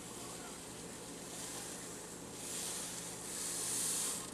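Epsom salt crystals pouring from a cup into a stainless steel saucepan of hot water: a soft, steady hiss that grows louder in the second half.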